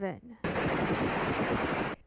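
Rapid gunfire from several shooters, the shots running together into a dense, continuous barrage, heard through a home security camera's microphone. It starts about half a second in and cuts off suddenly near the end.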